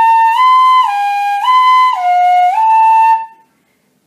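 Pífano (Brazilian cane fife) in C playing a slow finger exercise: clear held notes of about half a second each, returning to a home note between steps down to lower notes. The phrase stops about three and a quarter seconds in.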